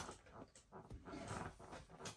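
Near silence: quiet room tone with a few faint, soft rustles.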